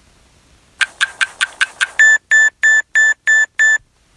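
Electronic oven timer going off: a quick run of six short chirps, then six evenly spaced high-pitched beeps at about three a second, signalling that the baking time is up.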